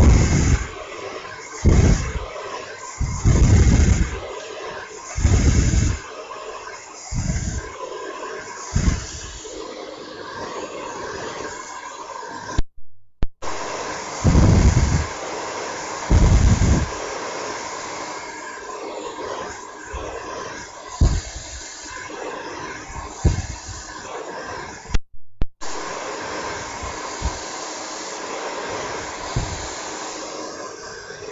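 Hair dryer blowing steadily while hair is blow-dried to set the style. Short low rumbles come every second or two through the first half, and the sound cuts out briefly twice.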